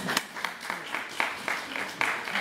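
Scattered hand-clapping from a meeting audience, irregular at a few claps a second, with voices beneath.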